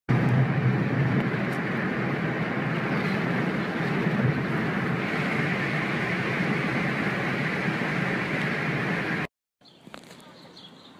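Steady rumble and road noise of a moving car.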